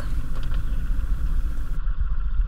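Dinghy outboard motor running steadily while the boat is under way.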